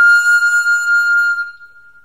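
A recorder holding one long, high note that fades away in the second half.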